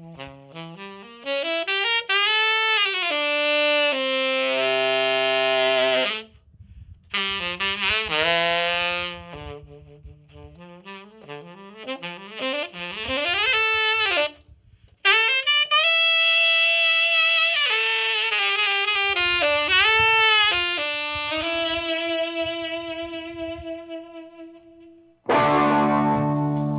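Tenor saxophone playing alone: melodic phrases bending up and down in pitch, with long held notes. It breaks off briefly about six seconds in and again about fourteen seconds in. Just before the end a fuller, lower sound comes in.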